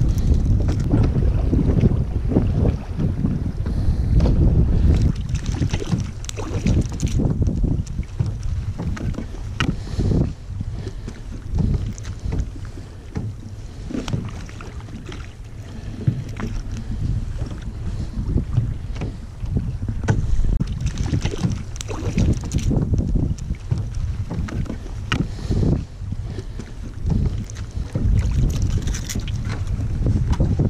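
Wind rumbling on the microphone over choppy sea, with water slapping against a plastic kayak hull. Scattered small knocks and clicks throughout.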